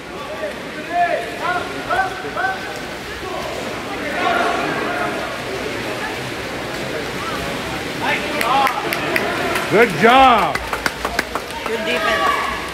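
Shouted calls from spectators and players ringing in an echoing indoor pool hall, over the steady splashing of swimmers in the water. The loudest shout comes near the end: "nice job, good job".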